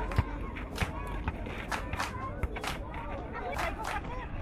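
Children's voices shouting and calling out on a football pitch, with several sharp knocks scattered through.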